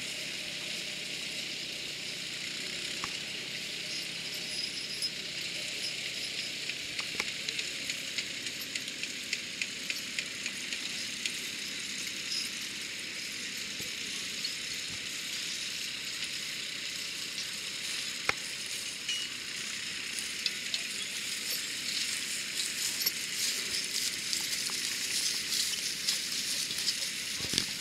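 Crackling and light clinking from a horse-drawn plough working through dry stubble, with its chains and harness, over a steady hiss. The crackles and clicks grow busier and louder over the last few seconds.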